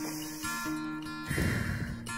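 Background music of acoustic guitar, with steady held notes. About a second and a half in, a short rush of noise sounds over it.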